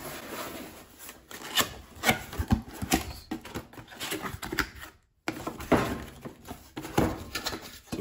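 Cardboard box being handled and opened: irregular scrapes, rubs and knocks of cardboard as the box is turned over and its tabbed flaps are pulled open, with a brief silence about five seconds in.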